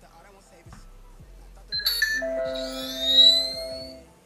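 Electronic Bluetooth pairing chime, heard as the phone pairs with the Edifier S2000MKIII speakers. Just under two seconds in, a short bright ding opens it. A held chord follows, with high tones sweeping upward over it; the chord grows loudest shortly after three seconds and stops near the end.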